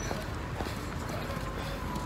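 Footsteps on hard paving, a few faint knocks over a steady low outdoor rumble.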